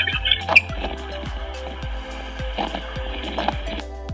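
Background music, with a steady hiss of wind noise picked up by an outdoor security camera's microphone and played back through the app's live audio. The hiss cuts off shortly before the end.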